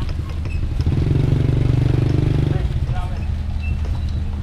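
Small motorcycle with a sidecar passing close, its engine running with a fast even beat. It swells about a second in, stays loud for under two seconds, then fades as it moves off.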